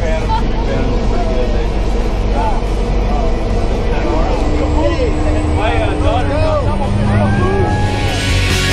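A small single-engine jump plane's engine and propeller running, heard from inside the cabin as a loud, steady low drone, with people's voices talking over it.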